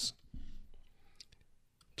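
Quiet room tone with a brief low sound about half a second in, then a few faint clicks later on.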